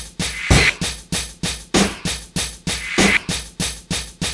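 A programmed hip-hop drum pattern playing back from FL Studio's step sequencer. Quick hi-hat-like ticks run about six or seven a second, and a heavier kick and snare hit comes about every one and a quarter seconds.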